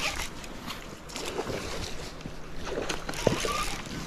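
Intermittent splashing water as a hooked trout thrashes at the river surface.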